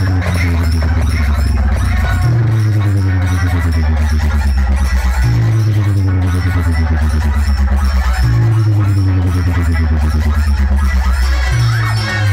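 Bass-heavy electronic music played very loud through towering stacks of outdoor speaker cabinets. A deep bass note restarts about every three seconds, with tones above it sliding downward in pitch.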